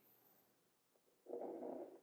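Near silence, then from a little past the middle a soft, low, muffled hum from a man's voice, a hesitation sound in the middle of a sentence.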